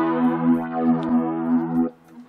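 Electric guitar chord ringing through the TASCAM DP-24/32's virtual amp with its flanger effect on, the tone wavering as the effect sweeps. It is cut off suddenly near the end.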